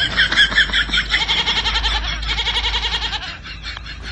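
A kid goat bleating one long, wavering call that stops about three-quarters of the way through.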